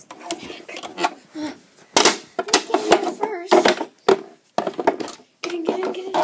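A child's voice with no clear words, joined from about two seconds in by a run of sharp clacks and knocks, roughly every half second, from plastic model horses being handled on the floor.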